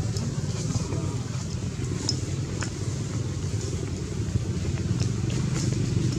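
A steady low engine hum, like a motor vehicle running, with faint scattered high ticks above it.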